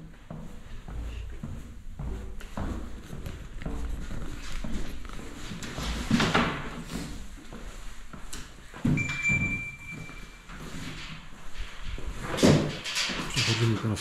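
Footsteps and camera handling noise while walking down stairs and across an empty tiled hall, with a few thuds and a short steady high tone about nine seconds in.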